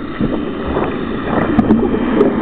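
Water rushing and sloshing around an underwater camera as the swimmer moves, a steady churning noise with a few small clicks and knocks.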